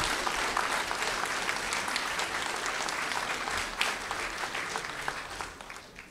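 Audience applauding, a dense crowd of claps that thins and fades out near the end.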